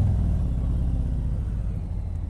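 Milwaukee-Eight 107 V-twin engine of a Harley-Davidson Street Glide, running at road speed with a low rumble mixed with wind noise. A small swell right at the start is followed by the revs easing gently down.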